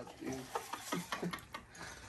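Quiet, scattered voices with a few light clicks and taps in between.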